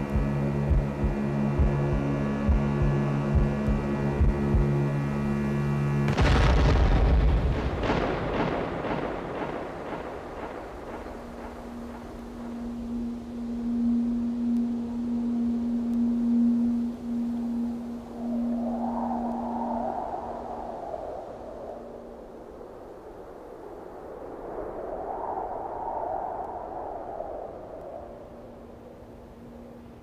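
Film score and sound design: a droning hum with low pulses that breaks off about six seconds in with a loud boom, which rings away over several seconds. A quieter held tone follows, with two soft swells of higher tones near the end.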